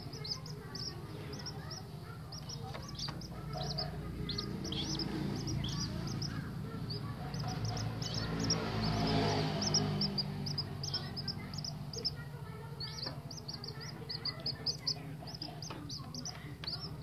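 Common moorhen chicks peeping, a run of short high-pitched calls several times a second, over a steady low hum. A brief rustling swell near the middle is the loudest part.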